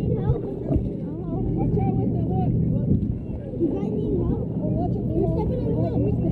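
Indistinct voices of several people talking over a steady low engine hum.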